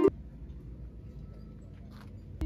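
Background music cuts off abruptly right at the start, leaving faint, steady outdoor background noise, mostly a low rumble.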